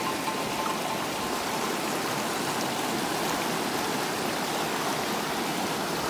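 A shallow, fast river rushing over rocks just below a log crossing, a steady rushing of water.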